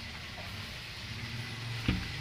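A low, steady motor hum, with a single short knock near the end.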